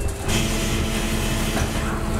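Transit bus running: a steady engine hum and low rumble under a broad rushing noise that swells about a quarter second in.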